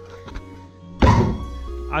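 One heavy thunk about a second in, with a short ringing tail: a parkour training block being struck to show that it is loose and wobbles. Background music plays underneath.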